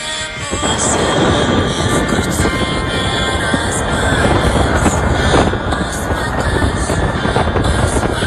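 Music playing under a loud, steady rush of wind and road noise from a moving car. The noise swells in about half a second in.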